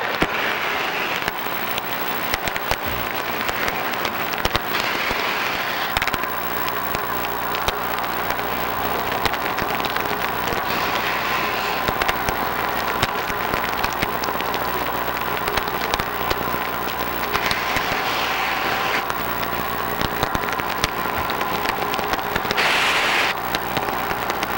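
Underwater dive-site sound: a dense, steady crackle of clicks over a steady low machine hum. A diver's exhaled breath bubbles out in a rush about every five or six seconds.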